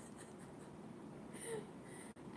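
Quiet room noise between remarks, with one brief, soft vocal sound from a woman, a breath or small laugh, about a second and a half in.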